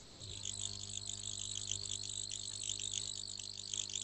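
Faint steady electrical-sounding hum that comes in about a third of a second in, with a high, rapidly pulsing chirr like insects above it.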